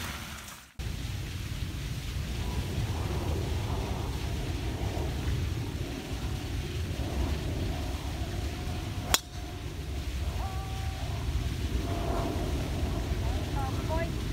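Wind rumbling on the microphone, with a single sharp crack about nine seconds in as a golf club strikes the ball off the tee.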